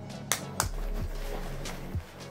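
A few short clicks and rustles from a fabric shoulder bag being handled, over a steady low background music bed.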